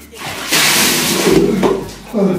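Ice water tipped from a plastic basin over a person's head: a loud rush and splash of water lasting about a second, starting about half a second in, then a person's voice crying out.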